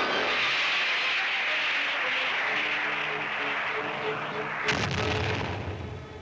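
Two heavy weapon blasts. The first, at the start, fades away slowly over several seconds; the second is a sharp blast about five seconds in, with a deep low rumble. Faint orchestral music plays underneath.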